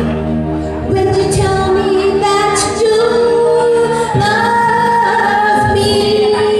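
A woman singing into a microphone over backing music, holding long notes, through an amplified sound system in a large room.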